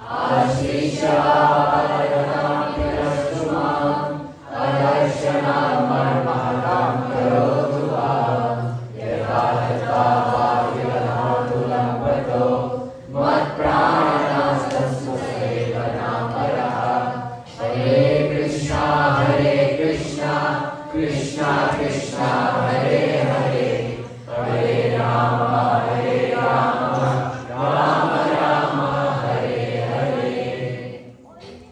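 A group of voices chanting together in unison, in repeated sung phrases of about four seconds, each ending in a brief breath pause.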